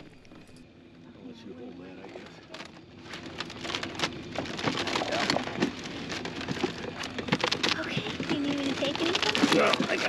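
Close crackling, creaking and rustling as people climb into a wicker balloon basket and brush against it, growing busier and louder a few seconds in, with indistinct voices alongside.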